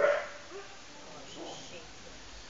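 A dog barks once, briefly, with fainter sounds following about half a second and a second and a half later.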